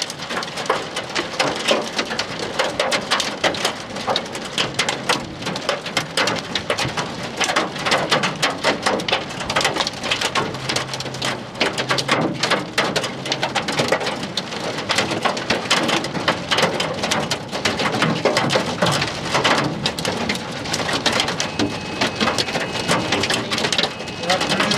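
Heavy rain pattering hard on a surface close to the microphone, a dense, continuous patter of drops.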